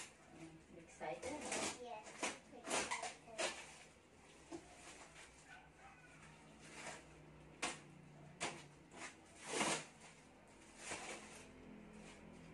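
Rustling and handling of packed items and packing material inside a large cardboard box, in a series of short, irregular bursts. The loudest comes about three-quarters of the way through.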